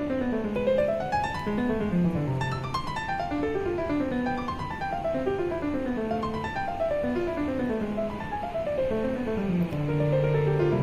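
Background music: solo piano playing flowing arpeggios that rise and fall over sustained bass notes.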